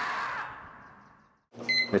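Screaming-marmot meme sound effect: one long scream that fades away over about a second and a half. A brief high tone follows near the end.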